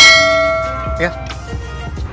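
A notification-bell 'ding' sound effect from a subscribe-button animation: one struck chime, loud at the start, ringing out and fading over about a second and a half.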